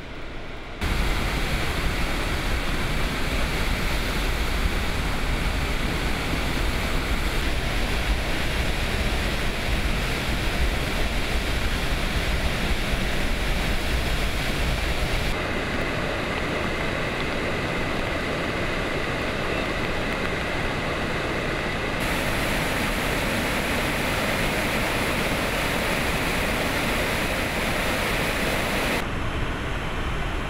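Floodwater from Shihmen Dam's fully opened floodgates rushing and crashing down below the dam: a loud, steady rush with a deep rumble through the first half. Its tone shifts abruptly several times.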